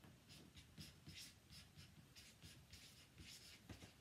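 Faint strokes of a felt-tip marker writing a word on chart paper, a quick run of light scratches.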